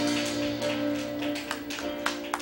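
Electronic keyboard's final held chord slowly fading out at the close of a gospel song, with a few sharp taps in the second half.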